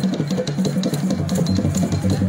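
Fast, steady traditional drumming with a dense run of strokes; a deeper drum joins in about halfway through.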